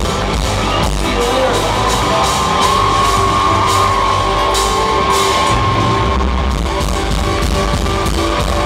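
A rock band playing live at full volume, drums and cymbals driving under the guitars, with a long held note through the middle.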